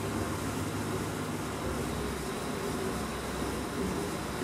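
Wastewater in a sewage treatment plant's aeration tank churning steadily as blower air bubbles up through it, over a constant low machine hum.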